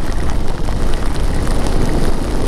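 Steady wind rush over the camera microphone of a motorcycle moving through rain, with raindrops spattering on the camera.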